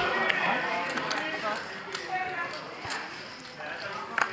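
Low background chatter at a poker table, with scattered light clicks of poker chips being handled.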